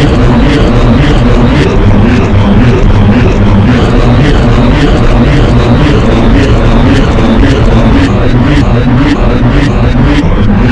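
Loud, heavily distorted and pitch-shifted remix of an Oreo chocolate commercial's soundtrack, clipped and smeared by audio effects. It has a steady pulsing beat of about three to four hits a second, with warped voice-like sounds buried in it.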